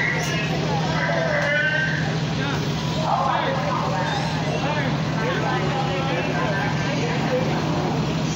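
Indistinct chatter of several voices over a steady low hum.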